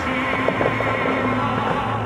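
Operatic music with orchestra accompanying the Bellagio fountain show, here mostly held sustained notes between sung phrases, over the steady rushing hiss of the fountain's water jets.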